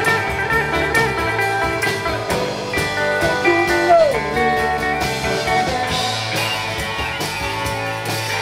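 Psychedelic rock band playing live: electric guitars over bass and drums with steady cymbal hits. A note slides downward about halfway through.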